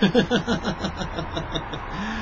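A man chuckling: a quick run of short laughing pulses that dies away about one and a half seconds in.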